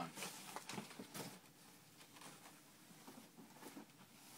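Faint handling of cardboard: a shoebox being lifted out of a shipping box, with a few light scrapes and rustles in the first second or so, then quieter.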